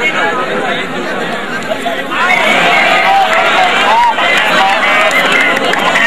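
Large crowd of kabaddi spectators, many voices chattering and shouting at once. It gets louder about two seconds in.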